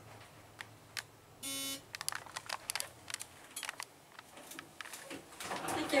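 A ThyssenKrupp traction elevator's electronic signal sounds once, a short buzzy tone about a second and a half in, marking the car's arrival at the floor. It is followed by a scatter of light clicks as the car settles and the door equipment works.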